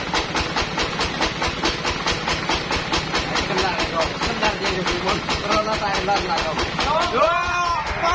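Sawmill machinery running with a steady hiss and a fast, even pulse of about seven beats a second while a teak log is shifted on the band-saw carriage. Near the end, a few rising-and-falling tones.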